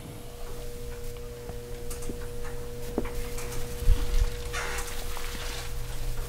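Steady electrical hum with a few light taps and a brief scratch of a dry-erase marker writing on a whiteboard.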